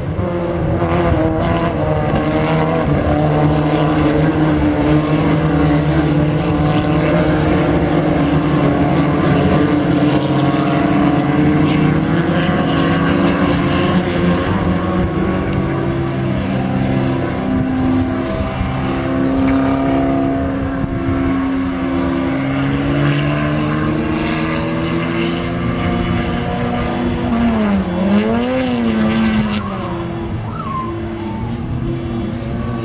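Citroën 3CV race cars' air-cooled flat-twin engines running flat out at high revs. The pitch dips sharply and climbs again near the end, as on a lift or gear change.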